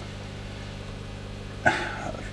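Steady low electrical hum of aquarium pumps and filters running, with a short sharp noise near the end.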